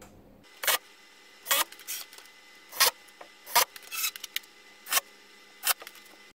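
A cordless drill/driver driving screws to hang hinges on an OSB shelf door, heard as a string of about eight short, sharp bursts.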